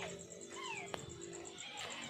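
Faint animal cries: a few short calls that fall in pitch, one at the start and two together about half a second in, with a single click near the middle.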